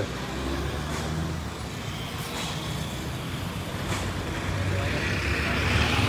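Road traffic passing close by: the steady engine hum and tyre noise of a pickup truck going past, then a city bus approaching, louder near the end.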